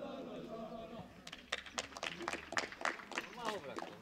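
Faint distant voices, then a run of sharp, irregular clicks, several a second, lasting about two and a half seconds.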